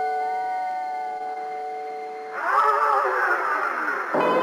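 Electric guitar music: a held chord rings out and slowly fades. A little past halfway a second, louder chord comes in, wavering slightly in pitch.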